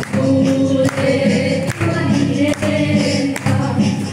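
A group of voices singing a Mizo zai song together in unison, with a steady beat struck a little more than once a second.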